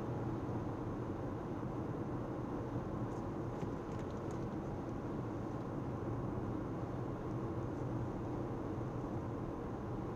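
Steady road and engine noise of a car driving at highway speed, heard inside the cabin as a low rumble. A few faint ticks come about three to four seconds in.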